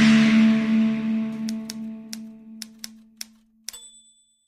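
Intro logo sound effect: a held low tone fading away over about three seconds, with a run of about eight short sharp clicks in its second half. It ends in a brief high ping just before the end.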